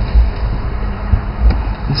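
Steady low rumble inside a car's cabin with a faint hum and a few soft low thumps, typical of a car idling or wind and handling on the camera microphone.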